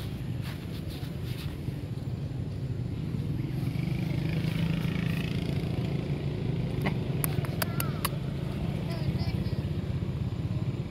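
A motor engine running steadily in the background, with a few sharp clicks about seven to eight seconds in.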